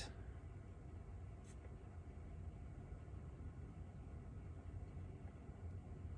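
Low-level room tone with a steady low hum and one faint tick about a second and a half in.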